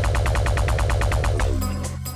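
An electronic dance track plays from a hot cue triggered on the DDJ-1000's pads in keyboard mode. It is a fast, even synth pulse of about eleven strokes a second over a steady bass. The pulse stops about one and a half seconds in, leaving a held bass note.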